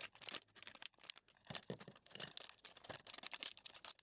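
LEGO minifigure blind-bag packet being torn open and handled: faint, irregular crinkling and rustling of the plastic wrapper.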